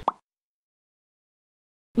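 A single short rising blip at the very start, then dead silence.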